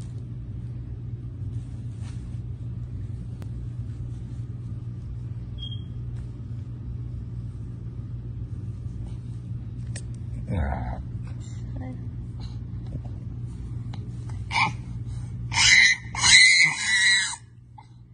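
A steady low hum with faint sounds over it, then several loud, short vocal outbursts in the last few seconds. The hum cuts off suddenly among them.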